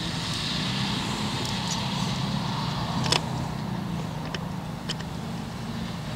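Farm tractor engine running steadily as it pulls a tipping trailer, with a few sharp clicks near the middle.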